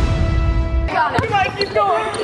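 Music with a heavy beat that cuts off abruptly about a second in, giving way to excited voices echoing in a gym and a sharp knock of a basketball bouncing on the hardwood floor.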